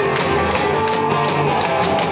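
A live rock band playing an instrumental passage, with electric guitar over a steady drum beat, loud as heard from within the crowd.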